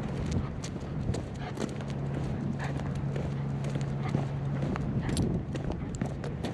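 Irregular sharp clicks of footsteps on stone paving, a dog's claws and a walker's shoes, with a steady low hum underneath through the middle.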